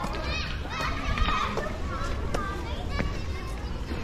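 Children's high voices calling and shouting among other visitors' talk, loudest in the first second and a half, over a steady low rumble.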